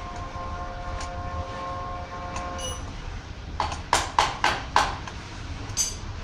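Small geared electric motor of a homemade spring-rolling machine running with a steady whine that stops a little before halfway, over a low rumble. A quick series of five sharp metallic knocks follows, about four a second, then one more near the end.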